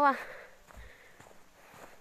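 Faint footsteps on snow while walking.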